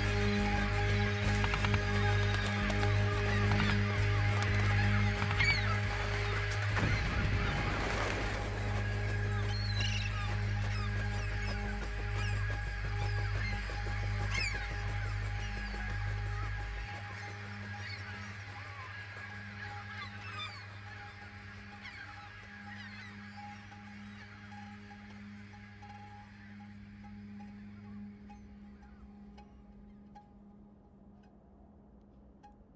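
A large flock of birds calling over a low, steady drone. The whole sound fades gradually away over the second half.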